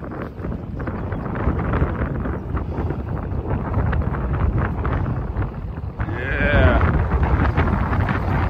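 Cat 259D compact track loader's diesel engine running and its tracks moving over dirt as it drives and turns, with wind on the microphone. About six seconds in, a brief wavering call rises over the machine noise.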